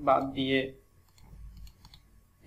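A short spoken word, then a few faint computer keyboard keystrokes in the second half.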